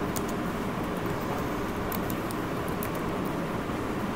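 Steady background noise with a few faint, short clicks from a computer keyboard as short terminal commands are typed.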